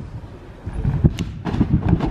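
Trampoline bed and springs thumping under a child bouncing and landing on the mat: a rapid run of dull thumps with a few sharp clicks, starting a little under a second in.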